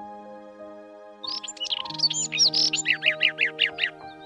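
A robin singing from about a second in: a run of varied high whistled notes, then a quick series of repeated falling notes, about six a second, near the end. Gentle background music with sustained notes plays under it.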